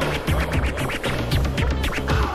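DJ mix of dance music with a steady beat, with records being scratched on turntables over it.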